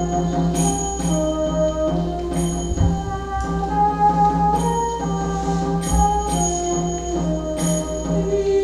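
Recorded instrumental introduction to a slow, almost primitive-sounding choral piece: a low pulsing drone under held melody notes, with bell-like percussion strokes about once a second.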